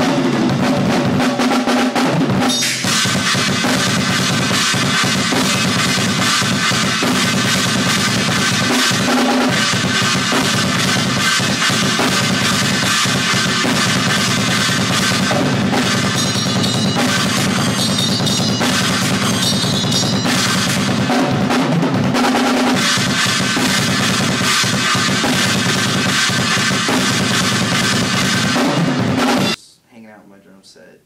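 Acoustic drum kit played hard and without a break in a metalcore style: cymbals, snare and kick drum together. It cuts off abruptly just before the end.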